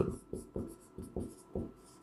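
Dry-erase marker writing on a whiteboard: a quick series of short scratching strokes as letters are drawn.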